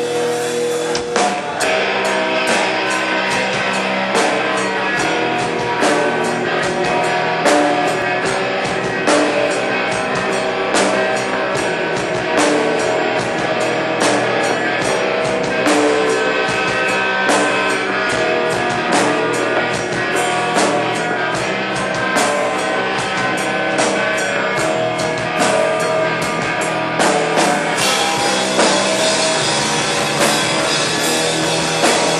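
A rock band playing live and loud: electric guitars over a busy drum kit, keeping up without a break.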